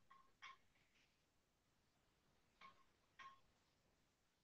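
Near silence, with three faint clicks: one about half a second in and two close together near the end.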